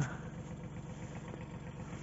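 Kubota tractor's diesel engine running steadily, a low even hum.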